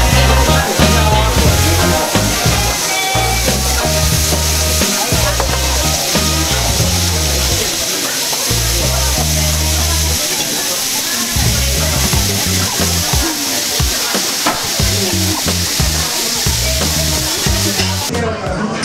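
Red miso sauce sizzling on a hot iron teppan plate under a pork cutlet, a steady hiss heard alongside background music with a rhythmic bass line.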